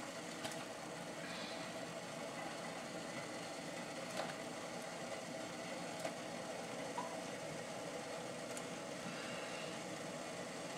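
Water at a rolling boil in a saucepan, a steady bubbling, with a few faint plops as strips of burbot are dropped in by hand.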